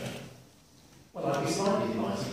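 Speech in a meeting room: talking, a pause of under a second, then a voice starting up again just over a second in.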